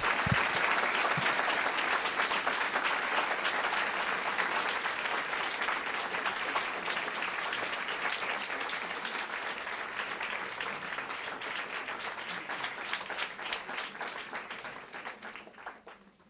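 Audience applauding: a dense, steady clapping that slowly thins out and dies away near the end.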